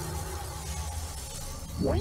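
Cartoon blast sound effect: a sustained noisy rumble that swells near the end, with rising swooshes.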